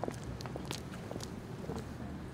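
Footsteps of several people walking on a paved street: irregular short clicks over a steady low rumble.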